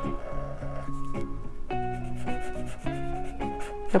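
Black marker tip rubbing on paper as it draws and fills in a small shape, the scratching most plain in the first second. Soft background guitar music plays underneath.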